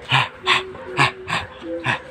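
Young dog making short, breathy vocal bursts during rough play, about two or three a second, with a faint high whine between some of them.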